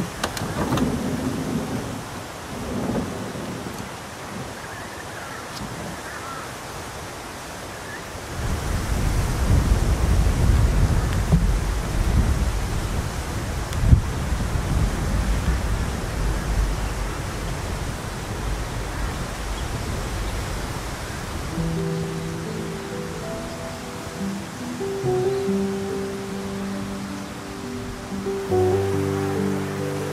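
Outdoor ambience with a long low rumble of thunder that swells about a third of the way in, rolls for roughly twelve seconds with one sharp crack in the middle, and fades away. Soft music with long held notes comes in near the end.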